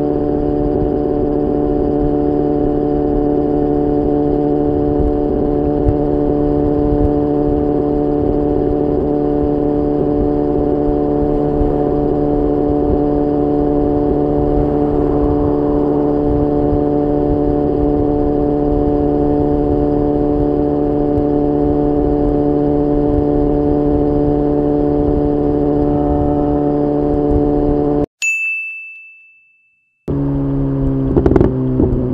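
BMW S1000R's inline four-cylinder engine at a steady motorway cruise, holding one constant pitch under wind and road noise. About two seconds before the end the engine sound cuts off abruptly and a single high ding rings and fades out, an edited-in transition chime.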